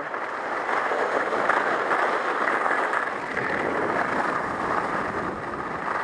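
Steady, muffled rushing of downhill skiing: skis sliding over snow mixed with wind over a body-worn camera.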